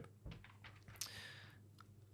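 Near silence of a small room, with a few faint clicks and a brief soft rustle about a second in.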